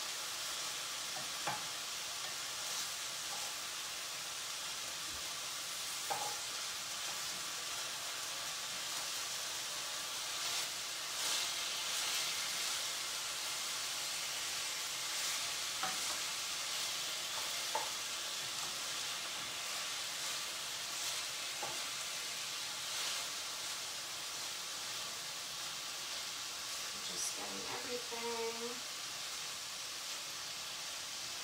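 Sausage pieces and broccoli florets sizzling steadily in a frying pan as the sausage is flipped over after browning on the first side, with occasional light clicks of the cooking utensil against the pan.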